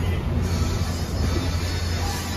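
A steady low mechanical hum, as of an engine or motor running, with no break or change.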